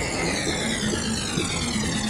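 Electronic whoosh effect in a hip-hop track's intro: a hissing, jet-like sweep falling steadily in pitch, over a low bass drone.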